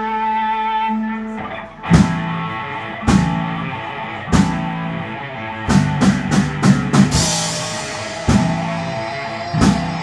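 Live rock band: an electric guitar holds a ringing chord, then about two seconds in the drum kit comes in with heavy accented hits roughly once a second, and the band plays on together, with a quick run of drum hits near the middle.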